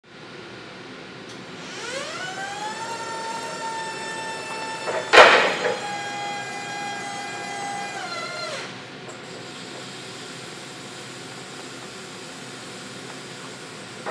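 Electric hydraulic pump motor of a 2010 Caterpillar EP25KPAC electric forklift whining as the mast lifts the forks: the whine rises in pitch as the pump spins up about two seconds in, holds steady, then winds down just after eight seconds. A single loud knock comes about five seconds in, and a fainter steady hum and hiss follows as the forks start down.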